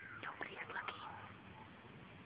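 Feed bag rustling and crinkling as a horse noses into it: a quick cluster of crinkles in the first second, then quieter.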